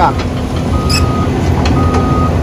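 Hydraulic excavator's diesel engine running with a steady low rumble, its warning alarm beeping about once a second.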